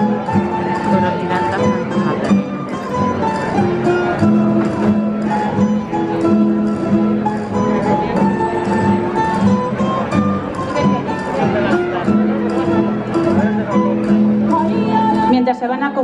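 A folk string band of guitars and other plucked instruments playing a traditional Madridejos dance tune with a steady, even rhythm. A voice starts singing near the end.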